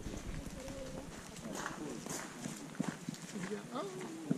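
Indistinct voices talking in the background, with a few scattered clicks like footsteps.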